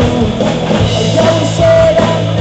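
Rock band playing live and loud through a stage PA: drum kit, electric guitar and electric bass guitar driving a fast rock song.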